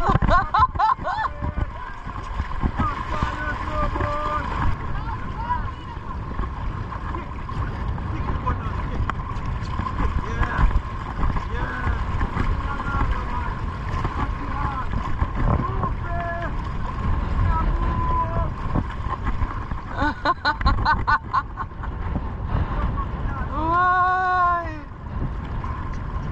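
Horses wading chest-deep through shallow sea water, a steady rush and splash of water churned by their legs, with wind buffeting the microphone. Scattered faint voices of other riders come through over it, louder near the end.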